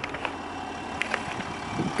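Footsteps crunching on a gravel forecourt, a few irregular steps, over a steady outdoor hum.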